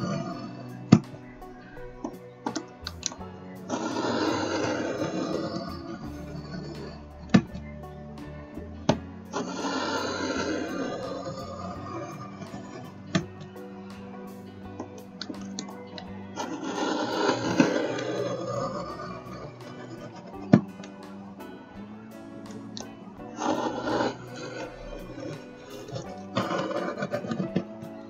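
Craft knife blade drawn through a stack of paper pages along a steel ruler, in about five slow cutting strokes of a second or two each, with a few sharp clicks between them. Background music plays underneath.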